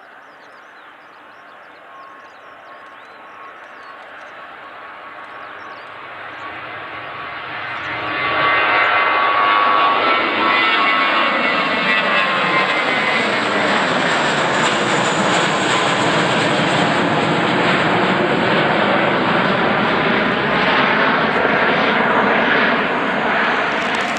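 Airbus A320 jet engines at takeoff power. The sound grows steadily louder as the airliner rolls down the runway and lifts off, then is loud and sustained from about a third of the way in as it climbs past overhead. A slow sweeping, phasing shimmer runs through the sound as it passes.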